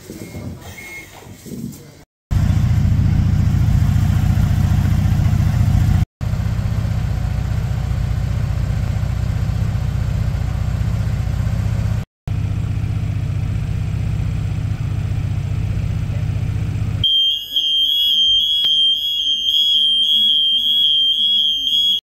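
Fire service vehicle's engine running steadily, a low even rumble that carries across several cuts. For the last five seconds or so it gives way to a continuous high-pitched alarm tone.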